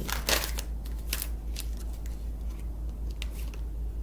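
Tarot cards being handled: a few brief card clicks and rustles as the deck is worked and a card is drawn out, over a steady low hum.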